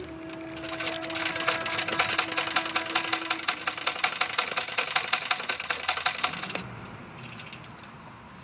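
Black Singer sewing machine stitching cloth, a fast, even mechanical clatter of the needle and feed that stops abruptly about six and a half seconds in.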